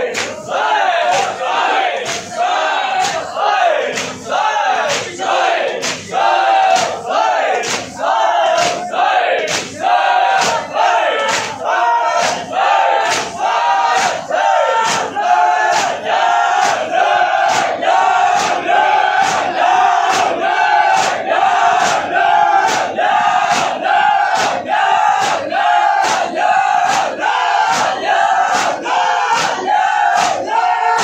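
Large group of men performing matam, striking their chests with their hands in unison at about one and a half strikes a second. Many male voices chant loudly together between the strikes.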